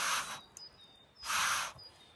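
Long breaths blown through a metal fire-blowing pipe into a wood fire to rekindle it, heard as two breathy blasts, one at the start and another about a second and a quarter later.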